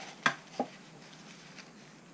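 Two short knocks, the first much louder, about a third of a second apart, as a gloved hand handles and wipes an outboard motor's propeller and lower gearcase with a paper towel.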